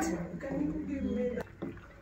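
A wooden spoon stirring thick, chunky tomato sauce in a stainless-steel pan, with a single knock against the pan about one and a half seconds in.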